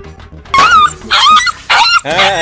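Three short, loud yelping cries, the first about half a second in, over background music.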